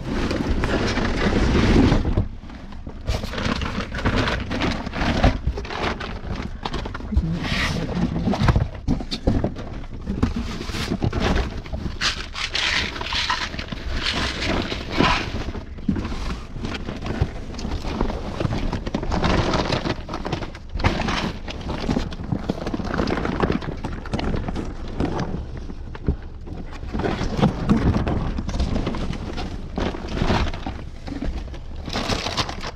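Cardboard boxes and plastic packaging rustling, crinkling and scraping as they are handled and shifted in a dumpster, with many irregular knocks and thuds.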